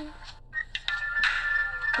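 A held sung note ends just after the start. After a brief pause, a steady high, electronic-sounding tone from the song's accompaniment comes in with a soft hiss around it.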